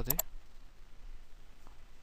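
A few light computer mouse clicks, with the end of a spoken word at the start.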